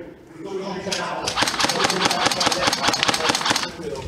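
Airsoft electric rifle firing on full auto: a fast, even rattle of shots, about a dozen a second, starting about a second and a half in and lasting about two and a half seconds.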